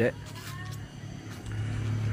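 A motor vehicle's engine running with a low, steady hum, growing louder about a second and a half in.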